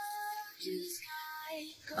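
Faint high-pitched singing: two short held notes in the first second or so.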